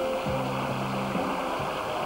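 The closing chord of a doo-wop band's song ringing out and stopping about a second in, with a studio audience applauding and cheering throughout.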